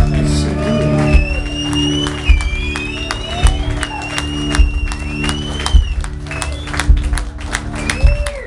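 A live rock band holding a sustained closing chord, with a long high wavering note over it, while the crowd claps and cheers; the chord dies away at the very end.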